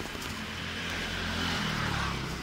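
A motor vehicle's engine running close by, a steady low hum under street noise that swells a little about a second and a half in.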